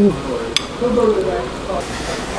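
A woman's voice going "ooh" with pleasure, then wordless murmuring sounds while she chews. A single sharp click about half a second in.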